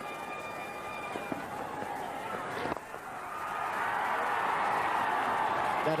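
Stadium crowd at a cricket match, with a single sharp crack of bat on ball about three seconds in. A swelling crowd roar follows as the shot is hit.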